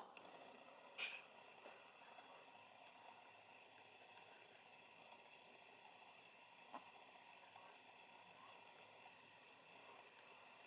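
Near silence: faint steady room hiss, with two brief soft clicks, one about a second in and one later.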